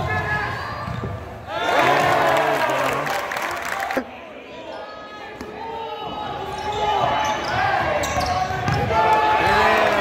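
A basketball dribbled on a hardwood gym floor, with spectators' voices and shouts echoing in the gym. The sound jumps abruptly about a second and a half in and again at four seconds.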